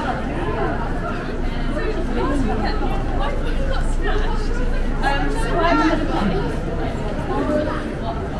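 Chatter of passers-by: several voices talking at once, overlapping, with no single speaker standing out.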